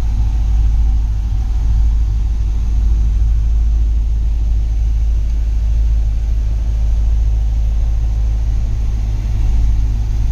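Corvette C5's V8 idling, a steady low rumble heard from inside the cabin.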